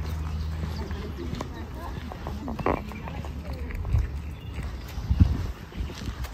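Outdoor railway-station ambience: a low steady hum for the first second and a half, then scattered clicks and faint voices, with two low thumps about four and five seconds in.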